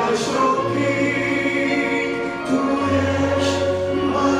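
A man singing a Christian worship song into a microphone, amplified through the church sound system, over accompaniment with long held bass notes.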